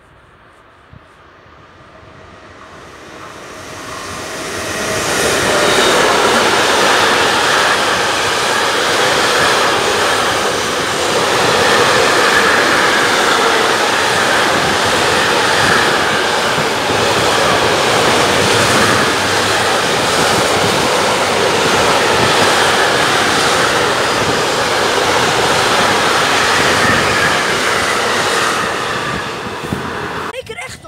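Container freight train passing a station platform without stopping. The noise builds over the first few seconds as the train approaches. The wagons then make a steady, loud rumble and rush for over twenty seconds, which drops away near the end.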